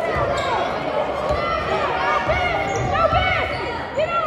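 Indoor basketball game: many short, high sneaker squeaks on the hardwood court, over the repeated thud of the ball bouncing, with voices in the background.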